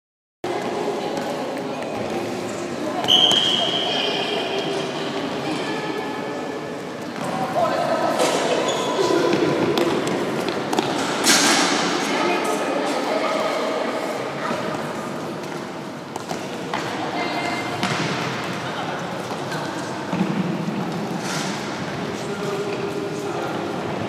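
Futsal game in a large echoing sports hall: players' shouts and calls, the ball thudding off feet and the floor, and a short high whistle about three seconds in.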